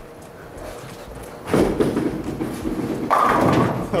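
A six-pound bowling ball rolling down a wooden lane, starting about a second and a half in, then bowling pins clattering about three seconds in.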